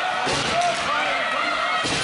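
Spectators at an ice hockey rink shouting and calling out, with sharp knocks of play on the ice: a slam about a quarter second in and a louder one near the end, as of a puck or player hitting the rink boards.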